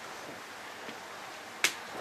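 Quiet room hiss with one sharp click about one and a half seconds in.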